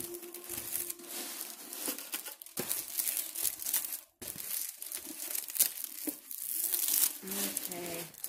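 Diamond-painting canvas with its plastic cover film crinkling and crackling as it is rolled back against its curl, in irregular handling strokes with a short pause about four seconds in.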